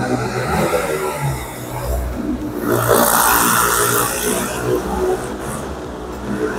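Downtown street noise with passing motor traffic. About three seconds in, a louder hissing rush lasts a little under two seconds.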